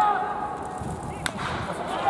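A single sharp crack of a wooden bat hitting a pitched baseball, about a second and a quarter in, over a background of crowd voices.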